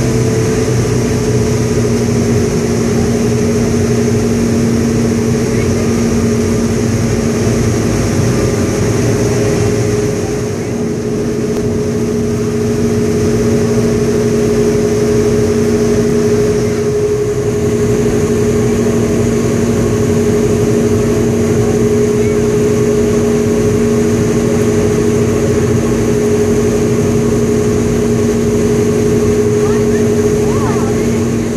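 Twin Caterpillar 16-cylinder turbocharged diesels of a Damen ASD 2411 harbour tug running steadily underway, heard on board: a deep, even drone with a steady hum over it. It dips slightly about ten seconds in.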